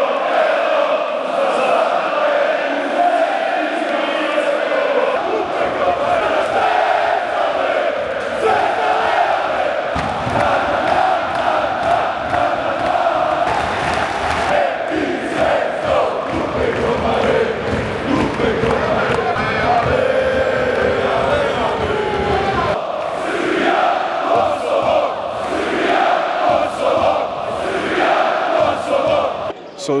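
Huge arena crowd of basketball supporters chanting and singing together, loud and unbroken.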